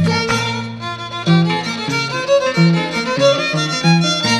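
Andean folk dance music, instrumental: a violin plays the melody over plucked bass notes from a harp.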